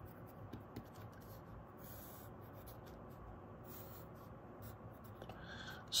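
Pencil writing on paper: a run of faint, short scratching strokes as numbers, letters and a long line are drawn.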